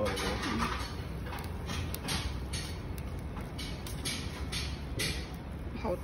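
Metal tongs clinking and scraping against a stainless steel bowl and a copper hotpot as pieces of raw fish are lifted into the broth. The clicks come irregularly, a few at a time, over a steady low rumble.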